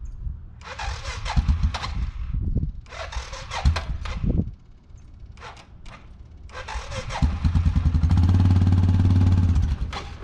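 ATV engine being started: the starter cranks in two tries of about two seconds each, then on a third try around seven seconds in the engine catches and runs steadily for a couple of seconds before dropping away just before the end.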